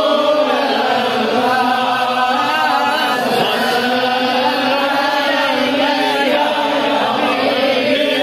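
A man reciting a naat in a solo chanted voice, with long held notes that waver and bend in pitch, unbroken throughout.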